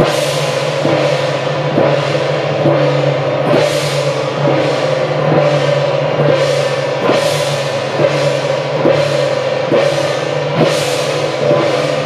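Temple-procession percussion of gongs and cymbals beating a steady rhythm, with a crash about every 0.9 seconds over a sustained ringing.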